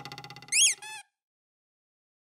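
Cartoon sound effects on a spinning animated logo: a fast rattle of about a dozen strokes a second that fades, then a short, high, squeaky chirp that glides up and down in pitch, with a fainter echo of it. The sound cuts off suddenly about a second in.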